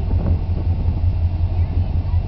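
Engine of a lifted 4x4 truck running at low revs while it crawls over a dirt mound: a steady, rough low drone.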